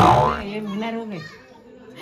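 Children's voices at play: one sudden loud shout at the start, then voices calling and talking until a little past a second in, then quieter.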